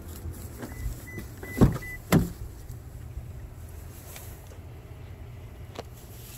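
The door of a 2018 Toyota Tacoma pickup being opened: two sharp latch clunks about a second and a half and two seconds in, with a few short high beeps just before them.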